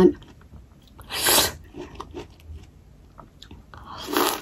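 A person chewing a juicy Japanese plum (sumomo), with soft wet mouth clicks, a short loud breathy rush of air about a second in, and a juicy bite into the plum at the end.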